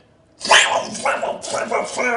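Laughter in choppy bursts, starting after a short pause about half a second in.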